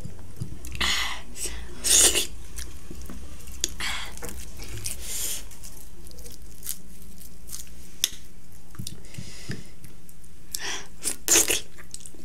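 A person chewing food close to the microphone, with several short, wet smacking and slurping sounds. The loudest come about two seconds in and near the end.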